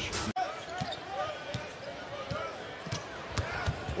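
Game sound from an NBA hardwood court: short sneaker squeaks, the ball bouncing, and a steady arena crowd murmur. There is a brief dropout about a third of a second in.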